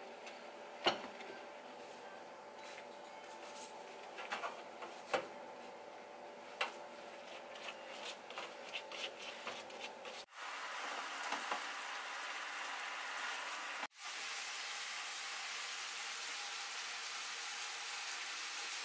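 A chef's knife cutting through a stack of flatbread wraps on a wooden chopping board, with scattered taps of the blade against the board. About ten seconds in, the sound changes abruptly to a steady hiss.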